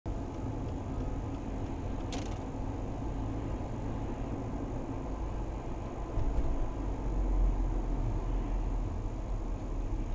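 Steady road and engine rumble of a Mercedes-Benz car driving at about 50 km/h, heard from inside the cabin, with one sharp click about two seconds in. The low rumble swells for a couple of seconds after the midpoint.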